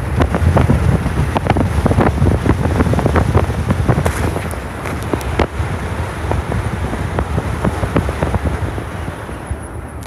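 Wind buffeting a phone microphone at the window of a moving car: a low rumble with dense, irregular crackling pops, easing off near the end.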